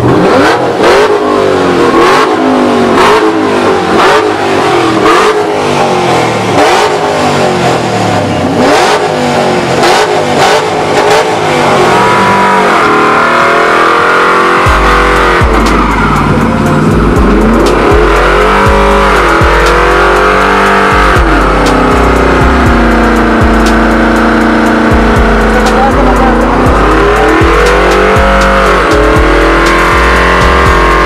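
Music with a steady beat, then, from about twelve seconds in, a GMC Sierra pickup's engine held at high revs with wavering pitch during a tire burnout, running on to the end.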